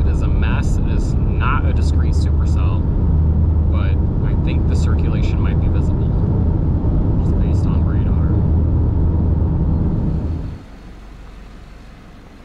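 Steady low road and engine drone inside a moving car's cabin, with a man's voice talking over it for much of the time. About ten and a half seconds in, the drone cuts off abruptly to a much quieter background.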